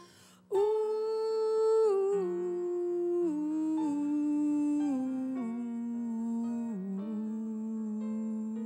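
A female voice humming a slow, wordless melody that enters about half a second in and steps downward note by note, each note held, over quiet instrumental accompaniment.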